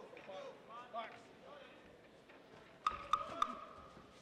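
Faint voices shouting around a Muay Thai ring, then, near the end, three sharp smacks in quick succession under a held shout, strikes landing as the fighters clinch.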